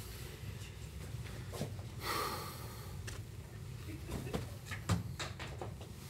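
Playing cards being handled and thrown: a few faint, scattered clicks and taps, the loudest near the end, with a short breathy rush about two seconds in.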